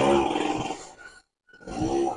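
A person's drawn-out, breathy voiced hesitation sound, like a long 'aah' or groan, fading out about a second in, then a shorter one near the end.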